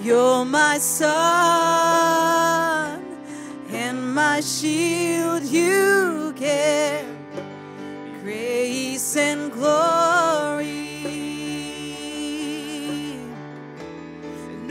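A woman singing slow, long-held phrases with vibrato over sustained electric keyboard chords.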